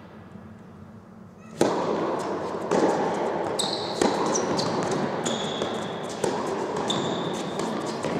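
Tennis balls struck by rackets during a doubles rally in an indoor hall, starting with a sharp serve about a second and a half in and followed by several more hits. Shoes squeak on the court surface in between, over a steady noisy background.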